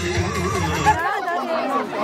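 Several women talking over one another, with loud dance music playing. The music's bass drops out about halfway through, leaving the voices.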